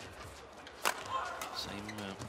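A single sharp crack of a badminton racket striking the shuttlecock, a little under a second in, over faint arena ambience.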